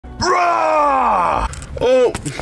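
A young man's long, drawn-out groan that falls steadily in pitch for over a second, followed near the end by a short vocal sound that rises and falls.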